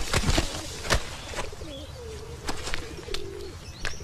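Irregular thumps and slaps of a heap of laundry being thrown about and beaten down. A pigeon coos in the middle of it.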